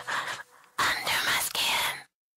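Whispered, breathy vocal in two short phrases with a brief gap between them, left on its own at the tail of a pop dance remix after the backing music has dropped out. It cuts off suddenly at the end.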